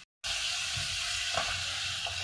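Pumpkin cubes and onion sizzling in hot oil in a non-stick kadai, a steady hiss that starts suddenly just after the beginning, with a wooden spatula stirring through the vegetables.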